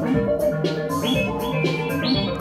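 Modular synthesizer playing sequenced electronic music: a repeating pattern of short pitched notes that step up and down every few tenths of a second, over a steady low bass line and regular noise hits.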